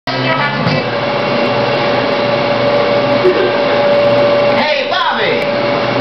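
A loud, steady machine whir with a constant hum running through it, and a person's voice starting near the end.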